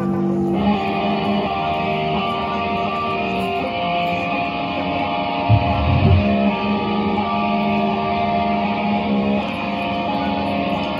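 Live band playing amplified guitar through PA speakers, with sustained notes. A denser, gritty guitar layer comes in about half a second in, and a few low thuds land around the middle.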